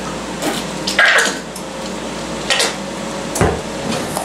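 Plastic squeeze bottle of ketchup being shaken and squeezed over a metal mixing bowl: a few short knocks, then a duller thump about three and a half seconds in as the bottle is set down on the counter.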